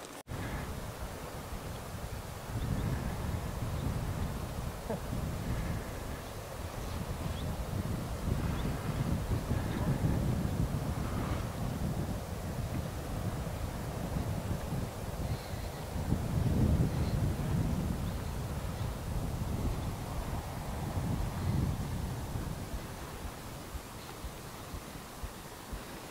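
Wind buffeting the microphone outdoors, a low noise that rises and falls in gusts.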